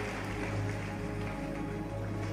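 Soft worship music of held, sustained chords over a steady low note, typical of a church keyboard pad.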